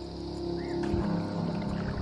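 Soft background music, with water and kayak-paddle sounds growing louder underneath it.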